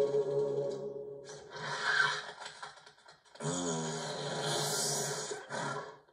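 Film music fades out in the first second. Then come two stretches of rasping, hissing sound effects; the second is louder and carries a rising whistle-like glide. The sound cuts off at the end.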